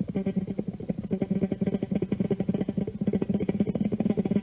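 Electric bass guitar played fast, a rapid unbroken stream of short, percussive notes over a sustained low note.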